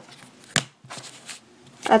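Cased trading cards being handled: one sharp plastic click about half a second in, then a few faint rustles and scrapes.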